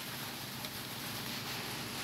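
Steady background hiss with no distinct sounds, in a pause between sentences.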